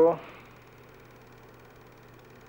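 A man's voice ends just after the start, then a faint steady hum and hiss of room tone fills the rest, with no distinct events.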